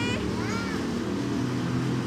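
A steady low motor drone in the background, with a brief high-pitched call about half a second in.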